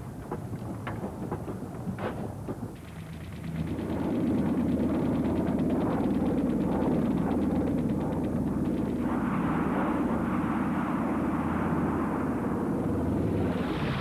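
Wartime battle sound: a few scattered gunshots, then from a few seconds in a loud, steady aircraft engine noise with a rapid rattle of gunfire, growing brighter in the second half and ending in a short rising rush.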